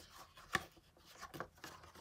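Faint handling of a cardboard box in the hands: a sharp click about half a second in, then a few light taps and rubs.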